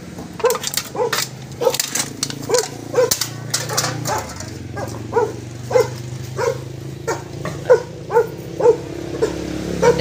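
A dog barking in short, repeated yaps, about two a second, over a steady low hum. A few sharp clicks come in the first two seconds.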